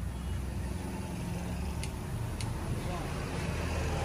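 Aerosol can of flammable spray hissing steadily as it is sprayed into the gap between a stretched tyre's bead and the rim, the step before the gas is lit to pop the bead onto the rim. A low rumble of traffic or engines runs underneath.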